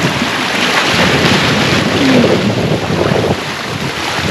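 Wind buffeting the microphone over sea waves washing against a rocky shore: a loud, steady rushing noise.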